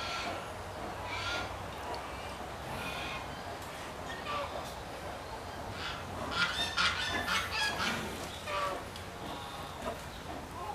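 Bird calls with a honking quality: a few short calls spread through the first half, then a busier run of calls in the second half.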